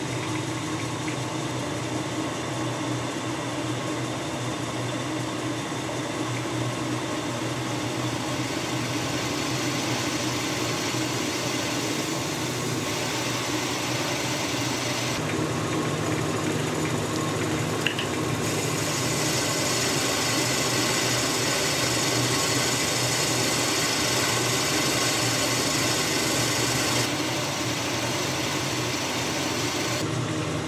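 Metal lathe running with an 8.5 mm twist drill spinning in its spindle: a steady motor and gear hum. From about halfway through, a louder cutting hiss joins it as the drill bores a bolt clearance hole, easing again shortly before the end.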